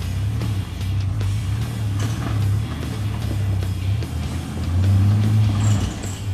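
Rock music with guitar over the engine of a modified Nissan GQ Patrol 4WD running as it crawls up a rocky track.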